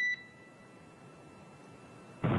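A single short electronic beep, about a quarter second long, right at the start: the beep of the spacecraft-to-ground radio loop between transmissions. After it there is only faint hiss from the open line.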